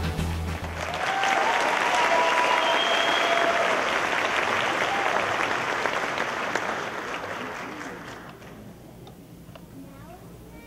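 An audience applauds with some cheering as the dance music cuts off about a second in. The applause swells, then dies away over the last few seconds.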